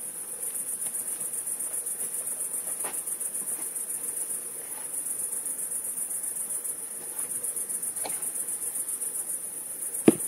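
Crickets chirping in a steady, high-pitched, finely pulsing trill, with a couple of faint knocks about three and eight seconds in.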